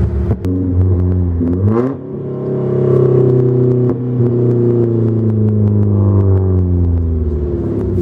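Volvo 740's red-block four-cylinder engine heard from inside the cabin, accelerating hard through the gears on a new 2.5-inch side-exit exhaust with a flex pipe and resonator. The revs climb and fall away at a gear change about two seconds in, then the engine pulls on strongly.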